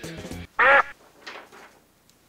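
Background guitar music stops, then a single short, loud, quack-like honk about half a second in, followed by a fainter echo of it.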